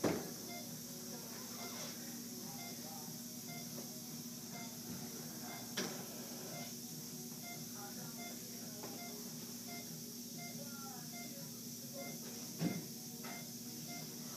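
Steady low hum and hiss of room tone, with faint, indistinct voice sounds and three brief knocks: one at the start, one near the middle, one near the end.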